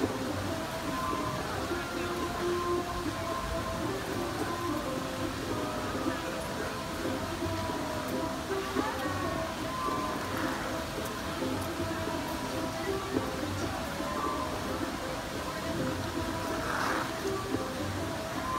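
Music playing with a crowd's voices murmuring underneath.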